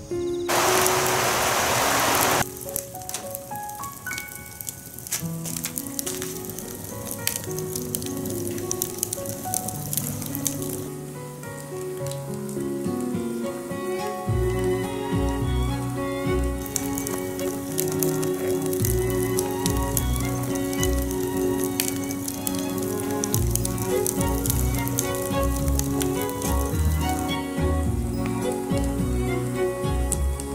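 Background music, with a deep bass beat joining about halfway, over the crackle and sizzle of a wood fire burning under a green bamboo tube on a grill. A loud hiss lasts about two seconds near the start.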